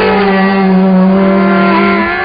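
Carnatic classical music: a steady low drone note held under a higher melody line that slides slowly down in pitch.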